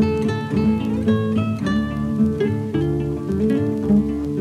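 Acoustic guitar playing an instrumental break between verses of a folk sea song, a steady run of plucked and strummed notes over a bass line.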